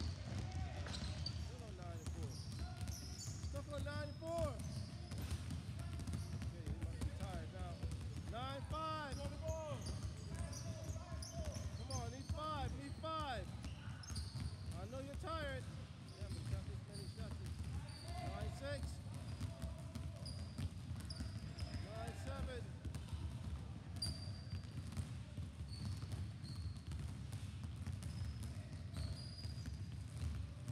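Several basketballs being dribbled at once on a sports-hall floor, a steady, overlapping patter of bounces. Voices come and go in the background.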